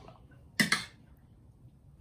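A metal spoon scraping and clinking once against a plate as a spoonful of rice is scooped up, a short sharp sound about half a second in; otherwise faint room tone.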